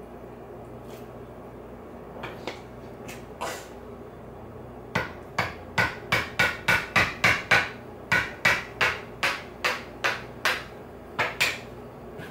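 A hammer strikes the handle of a screwdriver set in the eye of a whole coconut, driving it in to open the hole wider. A few light taps come first, then a steady run of about twenty sharp strikes, roughly three a second.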